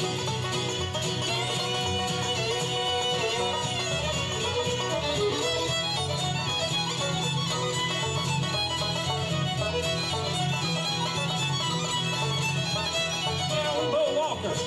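Live bluegrass band playing an instrumental break, with fiddle, acoustic guitar, banjo and upright bass; the fiddle carries the melody.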